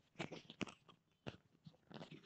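Faint, irregular clicks and crunching noises, several a second, the sharpest about a third and two-thirds of the way in.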